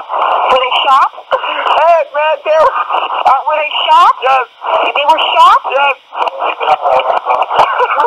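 Telephone-line recording of an emergency call: a dispatcher speaking and a distraught man crying and wailing, his pitch rising and falling in long arcs.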